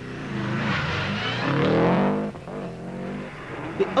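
Rally car engine accelerating hard, its note rising and growing louder, then dropping off sharply a little past two seconds in and running on lower.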